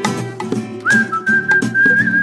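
Upbeat children's-song instrumental with plucked guitar and light percussion; a little under a second in, a high whistled note slides up briefly and is held steady.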